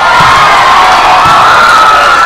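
A large crowd of schoolchildren cheering and screaming, very loud, starting all at once and holding for about two seconds.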